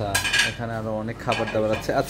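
Dishes and cutlery clinking and clattering in a canteen, with the sharpest clinks in the first half second.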